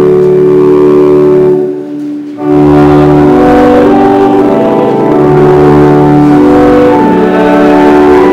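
Church organ playing a hymn in sustained chords, breaking off briefly about two seconds in between phrases before the next phrase begins.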